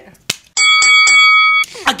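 A sharp slap, then an edited-in chime sound effect: three quick dings that ring on together for about a second, marking a right guess. Speech and laughter come in near the end.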